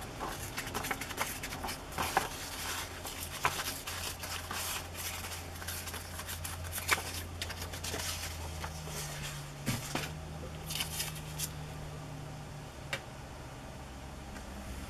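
Old, dry book page being torn by hand around a small illustration: quick crackling rips and rustles of paper, busiest in the first half, then a few lighter rustles.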